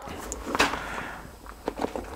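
Faint handling of the packaging on a desk: a soft rustle that fades, then a few light knocks, one about half a second in and two close together near the end.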